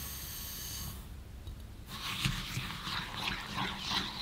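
Granulated sugar poured from a bowl into a saucepan of liquid cocoa mixture, a steady hiss that stops about a second in. From about two seconds in, a silicone spatula stirs the still-undissolved sugar into the mixture with a crackling scrape and small clicks.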